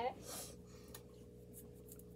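Faint, soft strokes of a makeup brush rubbing eyeshadow onto a closed eyelid, over a thin steady hum.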